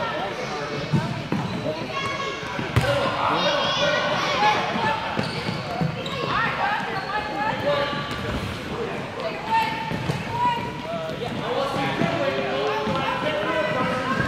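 Many children's voices calling and chattering over one another in a gymnasium, with soccer balls thumping now and then on the hardwood floor.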